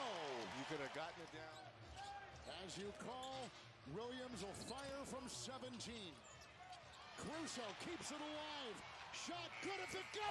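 A basketball being dribbled on an arena's hardwood court, a scatter of short knocks, with faint voices behind.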